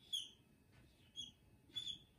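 Whiteboard marker squeaking on the board as lines are drawn: three short, high-pitched squeaks spread across the two seconds.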